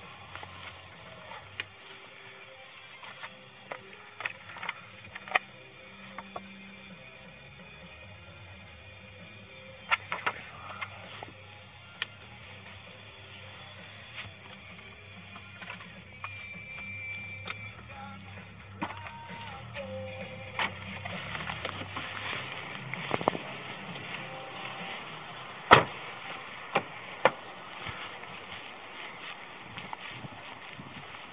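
Handling noises inside a car's cabin: scattered clicks and knocks over a low steady hum, with a few short electronic beeps past the middle. The loudest event is a single sharp knock near the end.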